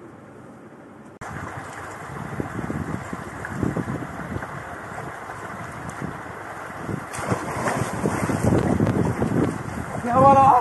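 Water splashing in an outdoor pool, with wind buffeting the microphone; the splashing grows louder and heavier about seven seconds in. The first second is quiet room tone before a cut.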